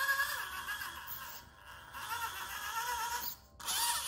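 Steering servo of an SCX24 micro crawler whining in short sweeps that rise and fall in pitch as the front wheels are turned back and forth, with a brief pause a little after three seconds.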